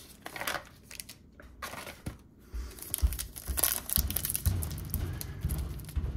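Foil wrapper of a Topps baseball card pack crinkling in the hands, sparse at first and then busier from about halfway, as the pack is torn open, with a few soft knocks of handling.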